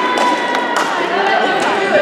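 Voices of players and spectators echoing in a gymnasium, with one held, slowly falling call and a few sharp knocks, like a volleyball bouncing on the hardwood floor.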